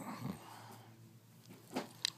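A person's brief low whimper at the start, then quiet, then a short noisy hiss near the end.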